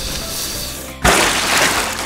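Cartoon water sound effect over background music: a spraying hiss, then a sudden loud splash about a second in that slowly fades.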